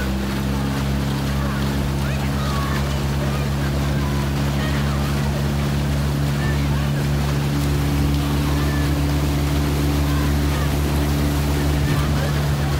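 Outboard motor of a coaching launch running steadily at a constant speed, with water rushing along the hull.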